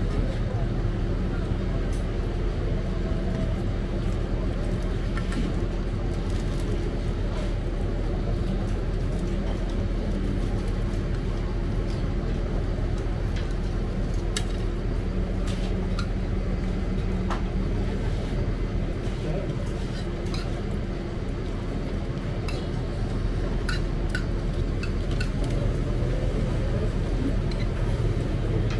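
Steady low mechanical hum with indistinct background voices, and scattered light clinks of a spoon and fork on a plate.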